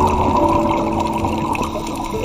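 Steady rushing water noise from inside a reef aquarium, as heard by a submerged camera, under soft background music with long held notes.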